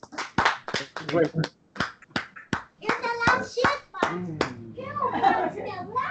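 People talking, a child's voice among them, with a run of short, sharp, irregular taps.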